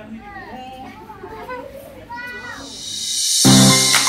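Voices with children's chatter, then a rising whoosh about three seconds in that leads into loud background music with chiming tones.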